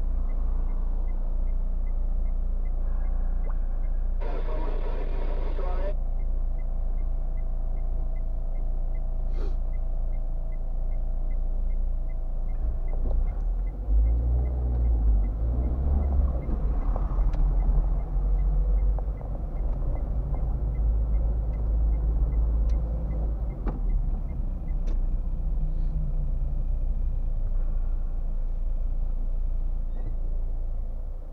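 Car engine and road rumble heard from inside the cabin. It is steady at first while the car waits, with a light regular ticking about twice a second. About a dozen seconds in, the rumble grows louder and more uneven as the car pulls away and drives on. A brief hiss comes a few seconds in.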